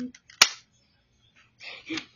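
Plastic spring-powered BB pistol fired once: a single sharp snap with a short decay, about half a second in.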